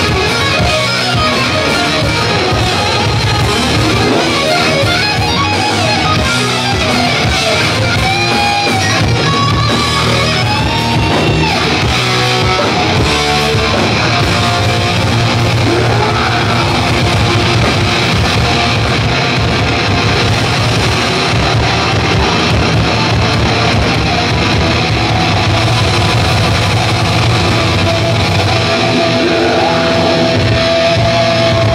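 Live hardcore punk band playing loud, with distorted electric guitar over bass and drums, at a steady level.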